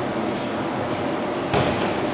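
A single thud about one and a half seconds in, from grapplers' bodies hitting the foam mat, over steady room noise of a gym hall.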